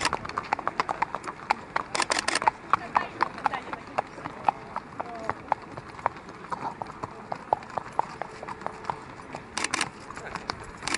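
Hooves of racehorses walking on a paved path, a clip-clop of irregular sharp clicks with a few denser bunches of strikes.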